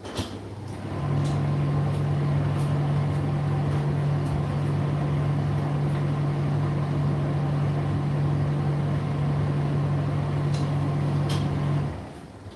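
Indesit IDC8T3 condenser tumble dryer running, with a loud steady hum that starts about a second in and cuts off suddenly near the end: the condensate pump sending the collected water up to the water container. Light clicks of the load tumbling in the drum sound throughout.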